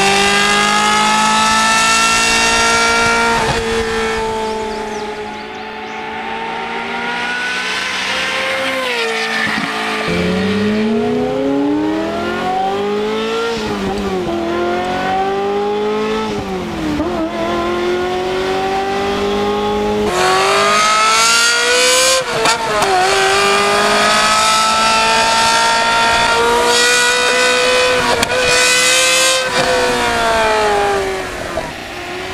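Ferrari F355 Spider's V8 with a Capristo stage three exhaust, Fabspeed headers and high-flow catalytic converters, accelerating hard through the gears. The pitch climbs on each pull and drops at each upshift, with easing off between runs.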